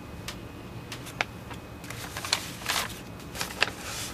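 Sheets of paper prints being handled and shuffled: a few light taps early on, then brief rustles about two seconds in and again near the end.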